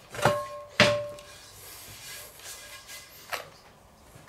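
A cast-iron skillet set down onto a wooden table: two knocks about half a second apart near the start, each with a short metallic ring. A few light clicks follow.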